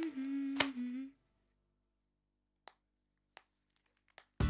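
Background music ending on a held note that steps down in pitch and stops about a second in. Then near silence, broken by two short sharp clicks.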